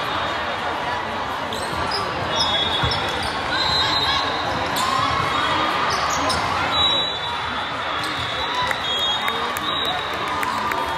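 Volleyball rally on a hardwood gym court: scattered sharp smacks of the ball being served, passed and hit, with short high squeaks and players and spectators calling out, all echoing in a large hall.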